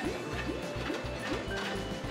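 Jingly music with short rising blips about three times a second over a steady low beat, along with a light clatter of plastic balls in a ball-pusher arcade game.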